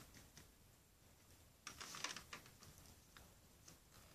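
Near silence, with a short cluster of faint plastic clicks about two seconds in and a few fainter ticks after, from Lego Power Functions connectors and parts being handled.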